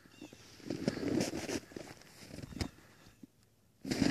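Footsteps crunching and scuffing in deep snow: a run of irregular steps and clicks in the first three seconds, then a short hush.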